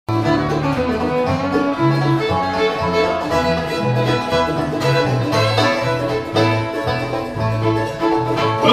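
Bluegrass band playing an instrumental intro: banjo, mandolin, dobro and fiddle over a Russian contrabass balalaika picking a steady bass line.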